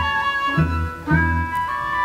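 Orchestra playing: a sustained high melody moving in steps over short low bass notes repeated about twice a second.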